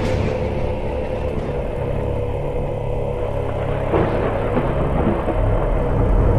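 Steady, low rumbling drone of a dark cinematic outro soundtrack playing under an end screen.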